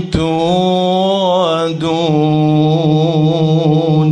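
A man's voice in melodic Quranic recitation (tajweed), holding a long drawn-out vowel with small wavering ornaments in pitch. The line breaks off briefly twice, just after the start and near the middle, and ends about at the close.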